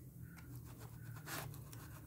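Faint scraping and light metallic clicks of a ring spanner and a feeler gauge being worked at a rocker-arm adjuster locknut, while the valve clearance on a Gilera GP800 engine is being set and checked. A low steady hum lies underneath.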